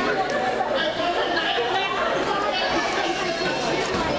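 Indistinct chatter of players and spectators in a school gymnasium, many voices overlapping with no single clear speaker.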